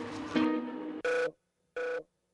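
Soundtrack music that stops about a second in, followed by short electronic telephone-ring tones broken by silence, two of them in this stretch.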